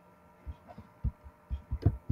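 Soft low thumps in a steady beat, about three to four a second, starting about half a second in and growing louder, over a faint steady hum.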